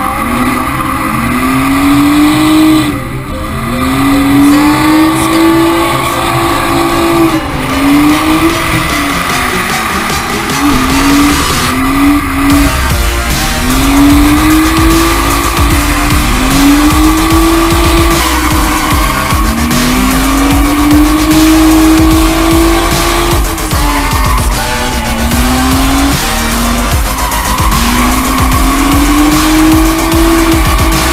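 Nissan R32 Skyline drift car's engine revving hard through a drift run, its pitch climbing over a second or two and then dropping, over and over, with tyres squealing as the car slides.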